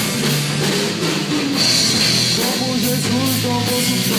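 A live band playing a pop-rock song: drum kit with cymbals, electric bass and guitars, with voices singing in Portuguese coming in about halfway through.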